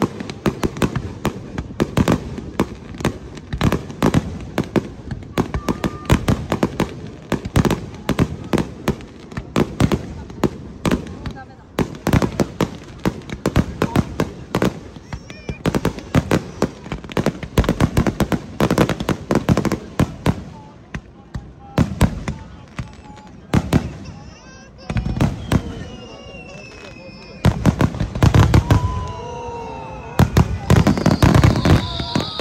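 Fireworks display: aerial shells going off in a rapid, near-continuous run of bangs. The bangs ease off a little after about twenty seconds, then a louder cluster comes near the end.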